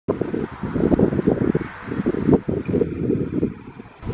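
Wind buffeting the microphone: an uneven low rumble that rises and falls in gusts, easing off near the end.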